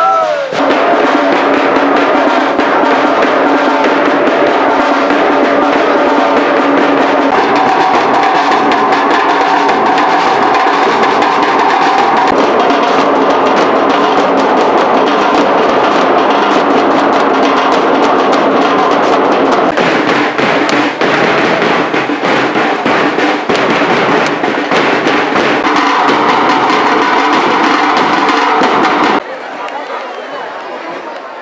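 Procession drums beaten in a fast, continuous rhythm under steady held melody tones, loud throughout. It cuts off sharply near the end, leaving quieter crowd sound.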